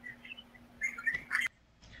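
A few faint, short bird chirps over a low steady hum; the hum stops abruptly about three quarters of the way in.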